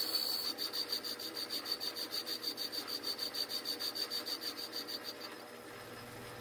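Metal lathe facing the end of a small cylinder casting held between centres on an expanding mandrel. A high steady whine comes with a rhythmic scraping pulse about six times a second as the tool cuts the uneven end face. The cutting stops about five seconds in.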